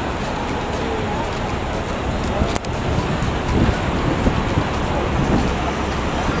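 Bus terminal yard ambience: a steady low rumble of idling bus diesel engines, with faint voices of people nearby and a single sharp click about two and a half seconds in.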